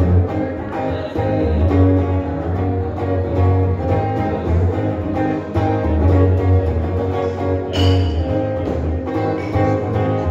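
Amplified electric guitar playing an instrumental passage of a rock song with a steady rhythmic pulse and a strong low end, with a brighter accent about eight seconds in.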